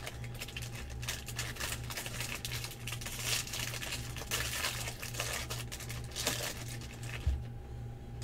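Foil wrapper of a trading-card pack crinkling and tearing as it is opened by hand: a dense run of crackles, over a steady low hum.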